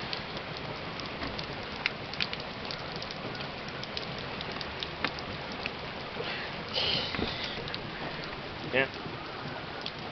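Heavy rain falling steadily: a constant hiss dotted with many sharp ticks of drops striking close by.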